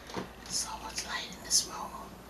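A woman whispering close to the microphone, in short breathy phrases.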